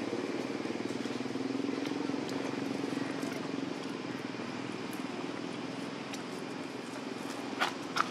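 A motor engine running with a steady low hum, loudest in the first few seconds and easing off after. A brief high squeal near the end.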